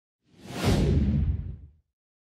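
Whoosh sound effect with a deep rumble under it. It swells up about half a second in, sweeps downward in pitch, and dies away just before two seconds.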